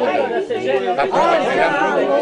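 Several men's voices talking over one another in lively group chatter.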